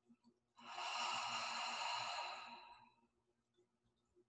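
A woman's deep breath taken slowly and audibly through the mouth: one long breath of about two seconds, starting about half a second in and fading out at the end.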